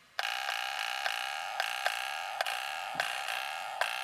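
An FPV drone remote controller's buzzer sounding one steady, high electronic beep tone, with about eight sharp clicks over it from buttons or switches being worked.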